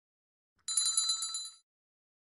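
A small bell sound effect rings rapidly and high-pitched for about a second, starting a little under a second in.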